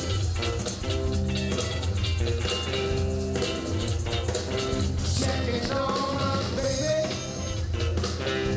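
Live electric blues band playing: electric guitars, bass guitar and drum kit, with a blues harmonica played into the vocal microphone and bending notes in the second half.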